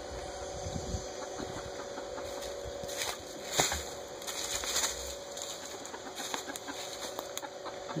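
Turkeys and chickens moving about in a coop, with brief scratchy rustles a few seconds in, over a steady low hum.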